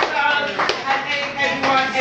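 A small group of people clapping their hands, with voices talking and calling out over the claps.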